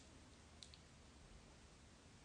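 Near silence: faint room tone, with a few very faint small clicks in the first second.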